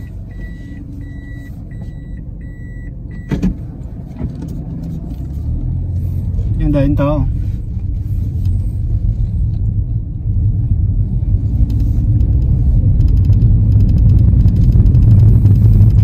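Inside a car, a chime gives about five evenly spaced high beeps over three seconds, then a single click. After that the engine and road noise rise steadily as the car pulls away and gathers speed.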